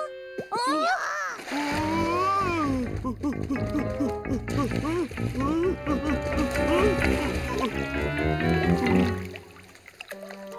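Cartoon soundtrack: playful music full of sliding, bouncing notes, with water splashing as the lake ice cracks and breaks under the polar bear's weight. The sound drops away sharply near the end.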